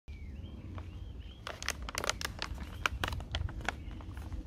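Plastic snack bag crinkling as it is handled, a run of sharp crackles starting about a second and a half in. A bird chirps faintly before that, over a low steady rumble.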